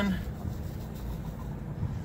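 Low, steady outdoor rumble with no distinct foreground sound, after a voice trailing off at the start.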